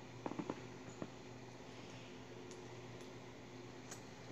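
Quiet room tone with a steady low hum, broken by a few faint clicks about half a second in and again near one second, the small handling noises of fingers moving a coin close to the microphone.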